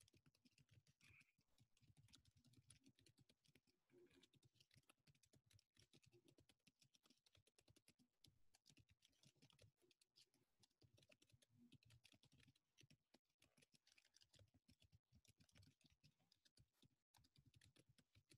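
Very faint typing on a computer keyboard: an irregular, rapid run of soft key clicks.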